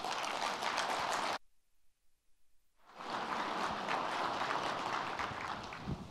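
Audience applauding in a conference hall; the applause cuts out to near silence for about a second and a half just over a second in, then comes back at the same level.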